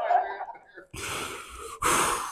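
A man's laughter breathed close into a handheld microphone: the end of a voiced laugh, then two loud gasping breaths, each under a second long, one right after the other.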